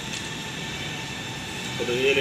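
Steady rushing background noise, with a man's voice starting near the end.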